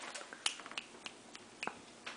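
A labrador puppy's claws clicking on a hardwood floor as it starts to walk: a string of light, irregular clicks, with the sharpest about half a second in and another just past the middle.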